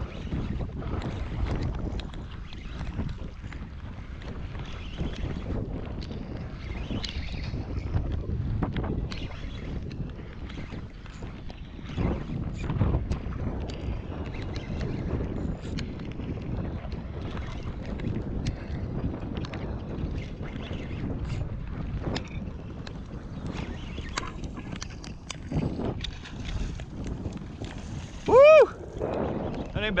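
Wind on the microphone and choppy water against a jon boat, with scattered sharp taps throughout.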